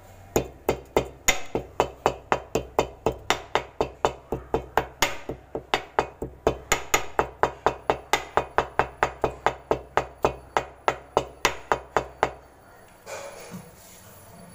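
Black peppercorns being crushed by quick, even pounding: a steady run of sharp strikes, about four a second, that stops about twelve seconds in.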